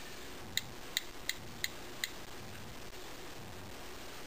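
iPhone on-screen keyboard clicking as letters are typed: five short ticks, about three a second, through the first two seconds, then only a faint steady hiss.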